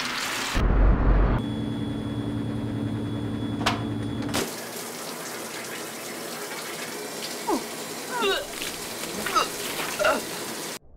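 Tap water running into a sink, then a loud low rumble and a steady hum for a few seconds, then a shower running with an even hiss of spray from about four and a half seconds in. A few short squeaks sound near the end.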